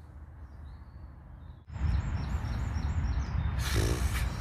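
Steady low rumble of distant motorway traffic. About two seconds in it grows louder and a bird starts chirping, high short notes evenly spaced, with a brief rush of hiss near the end.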